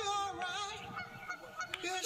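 A man singing a cappella, holding long wordless notes that bend and glide in pitch.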